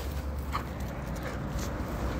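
Faint, scattered steps on concrete pavement over a low steady rumble.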